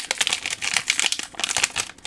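Metallised anti-static plastic bag crinkling and crackling as it is handled and torn open.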